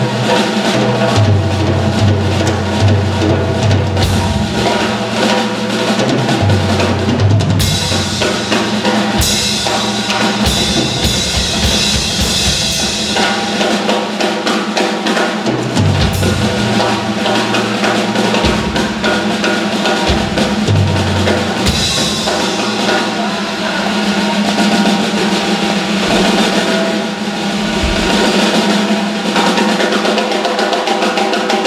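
Live blues band with the drum kit to the fore: busy drumming with a stretch of loud cymbal wash from about eight to thirteen seconds in, over a low bass line that holds notes for a second or two at a time.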